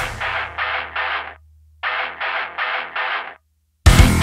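Heavy rock song breaking down into a stop-time passage: thin, filtered-sounding chord stabs, three then a short pause then four more, over a low held bass note. The full band crashes back in just before the end.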